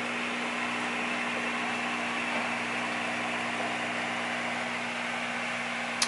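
Steady electric hum with an even hiss from the running equipment of a hydroponic grow tent.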